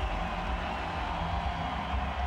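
Football stadium crowd noise, a steady din from the home fans cheering a touchdown.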